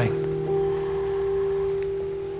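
Soft keyboard music holding one sustained chord.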